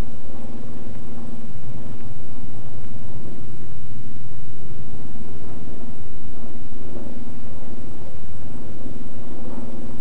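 Grumman F8F Bearcat's radial piston engine running with a steady, even drone as the fighter comes in to land, heard on an old optical film soundtrack.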